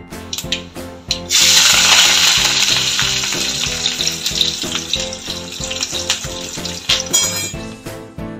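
Hot oil in an aluminium kadai sizzling loudly as curry leaves and dried red chillies are fried for tempering. It starts suddenly about a second in, then slowly dies down and stops near the end. Background music plays under it throughout.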